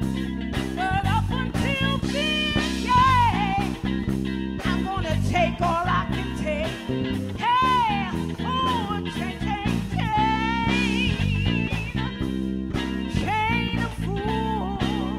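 Live soul band playing: a woman singing long wordless vocal runs that slide up and down, over electric bass, guitar and a steady drum beat.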